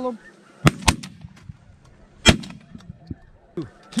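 Three shotgun blasts: two in quick succession under a second in, then a third, the loudest, about a second and a half later.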